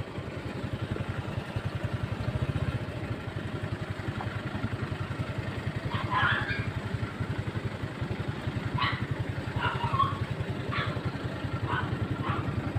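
Motorcycle engine running steadily with a fast, even exhaust pulse, heard from the seat of the moving bike.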